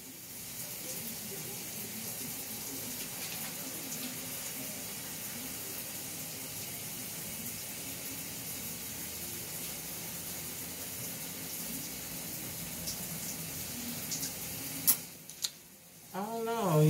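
Water running steadily from a bathroom sink tap, with a few sharp clicks near the end as it goes quiet.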